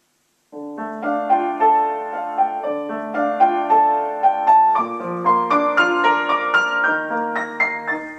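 Upright piano playing a slow, flowing passage of broken chords under a melody, starting about half a second in; the notes grow busier and climb higher in the second half.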